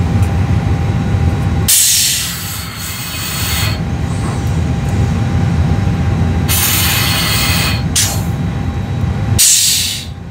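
Pressurised oxygen hissing from an Airbus A320 flight-crew quick-donning oxygen mask as it is put on and breathed through. It comes in bursts: a two-second hiss about two seconds in, then shorter ones near the end, over a steady low rumble.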